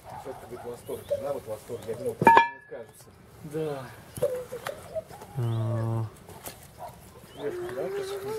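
Wire grilling basket clinking once with a sharp metallic ring about two seconds in, as raw fish fillets are laid on it. Quiet voices talk in the background, and a short, steady, low-pitched call sounds a little after the middle.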